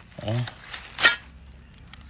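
A short spoken word, then a single sharp clink with a brief ring about a second in.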